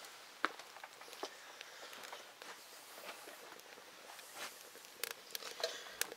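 Small fire of twigs and shredded tulip poplar bark burning in a metal bucket, giving a few faint, scattered snaps and crackles.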